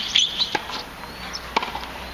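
A few sharp knocks of a tennis ball on racket and hard court, the loudest near the start and the last about a second and a half in. Short high sneaker squeaks on the court come near the start.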